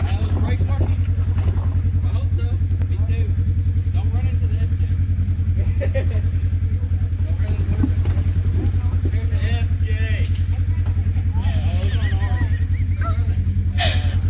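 A vehicle engine running steadily at low revs, a deep even rumble, with faint voices of people talking over it.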